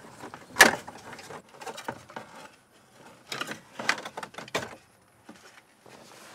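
Plastic instrument-cluster trim bezel being worked off a 2001 Ford F-150 dashboard: a sharp snap about half a second in as it is freed, then scattered plastic clicks and rattles as the piece is maneuvered out.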